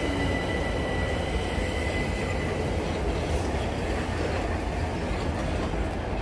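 Class 377 Electrostar electric multiple unit running along the platform road, a steady low rumble of the train rolling by, with a thin high tone for the first couple of seconds that then fades.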